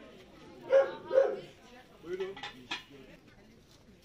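A dog barks twice in quick succession, about a second in; these are the loudest sounds, followed by fainter, shorter sounds.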